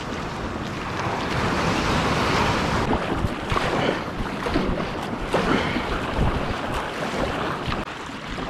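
Wind buffeting the microphone over the wash of sea water as a kayak is paddled across calm water, with a few brief splashes from the paddle strokes between about three and six seconds in.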